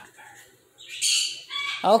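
An umbrella cockatoo gives one short, harsh squawk about a second in.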